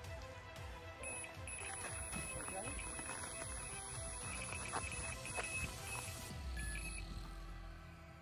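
Background music with an electronic carp bite alarm sounding a steady high tone from about a second in until near the end, with short breaks: the signal of a run, a fish taking line.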